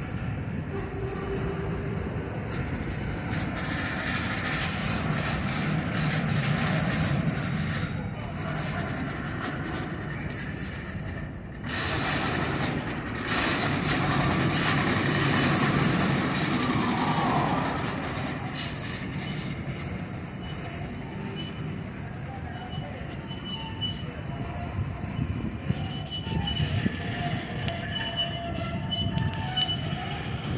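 Freight cars rolling slowly past on the rails, a steady rumble with short high wheel squeals coming and going throughout and a few clicks partway through.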